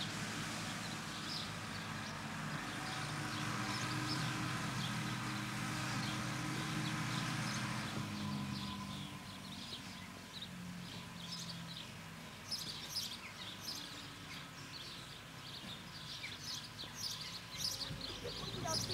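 Outdoor ambience of small birds chirping over a low steady hum; the hum drops away about eight seconds in and the chirping grows busier toward the end.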